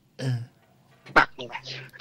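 Speech only: a man's short throat sound just after the start, then a few spoken words.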